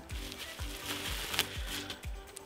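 Plastic bag and bubble-wrap packaging crinkling as it is handled, with one sharper crackle about a second and a half in. Background music with a steady beat runs underneath.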